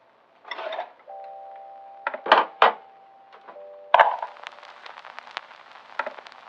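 Sparse lo-fi music: soft sustained chime-like keyboard notes that change every second or two, broken by a few short noisy hits, with crackling clicks through the second half.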